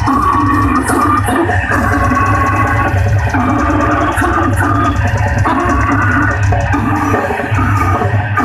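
Metal band playing live and loud: distorted electric guitar and bass over drums, in a riff of held chords that changes about once a second.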